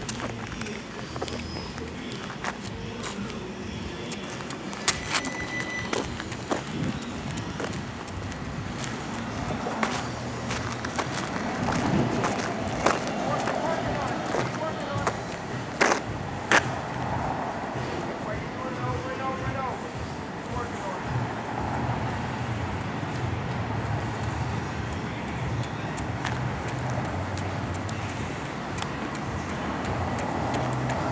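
Outdoor street ambience: a steady low hum of road traffic with a few sharp knocks and faint, indistinct voices.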